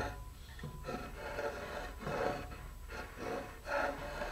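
Paintbrush dabbing and brushing thin, water-thinned carpenter's wood filler: a handful of soft, faint brush strokes at uneven intervals.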